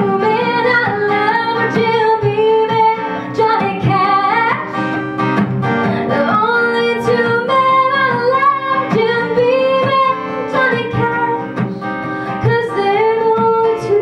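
A woman singing a melody over an acoustic guitar, the guitar strummed steadily.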